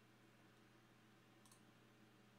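Near silence: faint room tone with a low steady hum and one faint, short click about one and a half seconds in.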